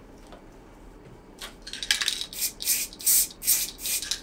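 Aerosol spray-paint can sprayed in a series of short hissing bursts, about two or three a second, starting about one and a half seconds in.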